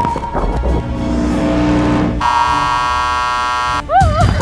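Edited game-show music, then a loud, steady electronic buzzer sound effect lasting about a second and a half that cuts off suddenly just before the end, marking a player's fall from the inflatable banana.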